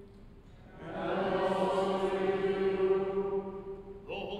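Congregation chanting a short liturgical response together on one held reciting note. It starts about a second in and lasts about three seconds.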